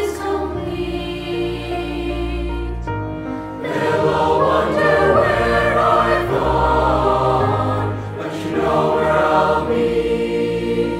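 Boys' choir singing a sustained, held passage of a song, recorded as a virtual choir. About three and a half seconds in, the sound grows louder and fuller as a larger group that includes young men's voices joins.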